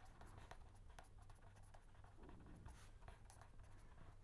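Faint scratching of a pen writing on paper, with a steady low hum beneath.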